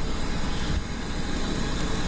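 Loud, steady engine noise at an airport: a deep rumble with an even hiss spread above it.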